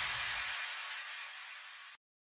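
A hissing noise sound effect, like static, fading steadily away and dying out into silence by the end.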